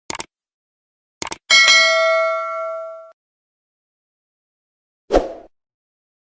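Subscribe-button animation sound effects: two quick pairs of mouse clicks, then a bright notification-bell ding that rings for about a second and a half, and a brief swish near the end.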